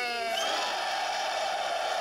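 Portable FM radio's small speaker playing the tail of a station jingle: a short rising whoosh, then a steady rush of noise.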